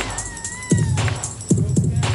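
Old-school hip hop track in a break between rap lines: a drum beat with deep kick drums and hi-hat ticks, and a thin high tone that slides slightly up and down during the first second.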